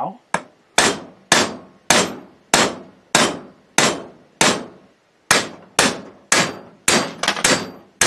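Hammer striking a home-made hardened steel taper pin punch to drive a taper pin out of an AR-15 upper: a steady run of about fourteen blows, roughly two a second and coming closer together near the end, each ringing briefly.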